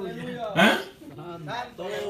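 A man's voice into a handheld microphone, in short unclear bursts of speech, with one loud exclamation about half a second in.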